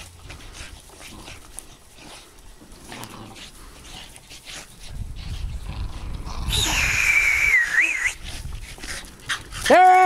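Two Boston terriers tugging at a football, with low scuffling for the first half. Around two-thirds of the way through, one dog gives a single high whine of about a second and a half that wavers and falls in pitch. A loud voice cuts in just before the end.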